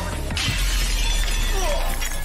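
Glass shattering about a third of a second in, the breaking glass going on for over a second, over music with a deep bass.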